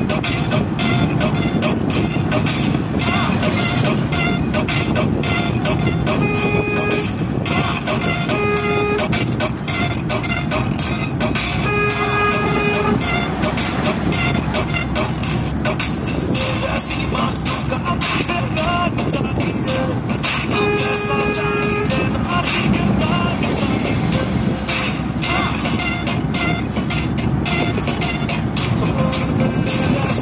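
Steady road and wind noise from inside a moving vehicle on a highway. A vehicle horn sounds four times: two short toots, then two longer honks of about a second and a half.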